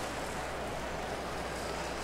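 Marbles rolling along plastic track rails, a steady, even rolling noise.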